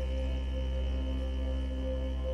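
Ambient background music: a low sustained drone under steady held tones, with no beat.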